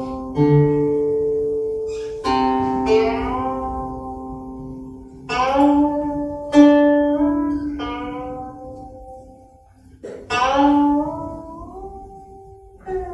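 Guqin (seven-string Chinese zither) played solo: slow, widely spaced plucked notes that ring and fade away over a second or more. Several notes bend upward in pitch as they sound, the left hand sliding along the string.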